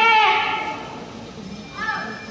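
Music from a reed wind instrument: a held note bends downward and fades about half a second in. A quieter lull follows, then a short rising note just before the end.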